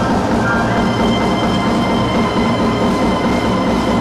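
Live jazz quartet of saxophone, piano, upright bass and drums playing, with a long held note that steps up in pitch less than a second in and then holds steady, over the rhythm section. Recorded from the audience.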